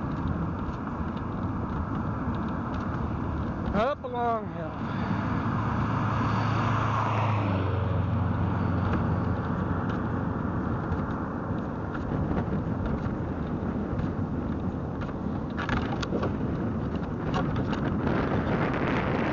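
Steady road and wind noise from a velomobile rolling along a paved road, picked up by a camera on its nose. About four seconds in, a car goes by with a falling whoosh, and a low engine hum follows for a few seconds.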